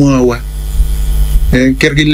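Steady low electrical mains hum running under the recording, with a voice speaking briefly at the start and again near the end.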